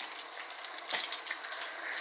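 A plastic drink bottle being handled and its screw cap twisted open: a few light clicks about a second and a second and a half in.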